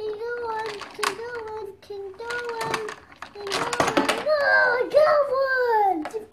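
A young boy's voice making wordless sing-song sounds in held notes, with a falling glide near the end, and a few sharp clicks from the plastic toy pieces he handles.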